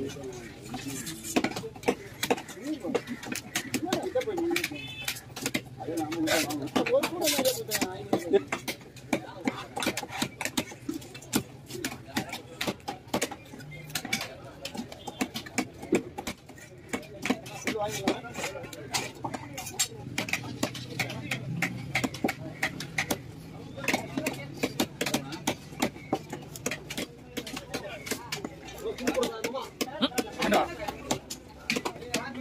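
A knife chopping fish into pieces on a wooden chopping block: many sharp, irregular strikes, with voices talking in the background.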